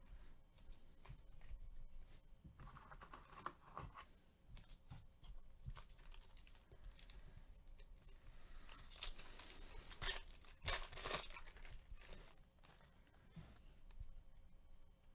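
Foil trading-card pack wrapper being torn open by hand and crinkled, faint rustling tears in several spells, the loudest about nine to eleven seconds in.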